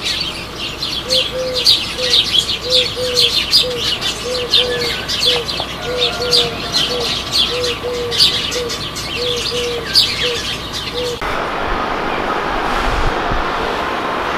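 Songbirds chirping rapidly, with a low, short call repeating about twice a second beneath them. About eleven seconds in, this cuts off and a steady rushing noise takes over.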